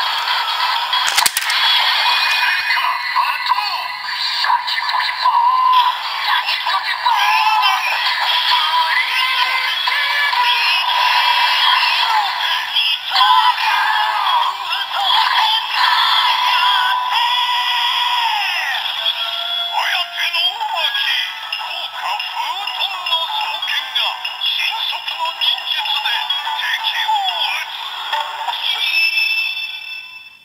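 Electronic audio from the small speaker of a DX Kamen Rider Saber wind twin-sword toy (Suifu) with the DX Primitive Dragon Wonder Ride Book fitted: a long rampage-form transformation sequence of music, synthesised singing and announcer voice with effects. It sounds thin and tinny with no bass, and cuts off near the end.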